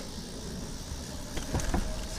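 Riding noise from a moving bicycle: a steady low rumble of wind on the microphone and tyres on pavement, with one sharp click at the start and a few faint knocks near the end.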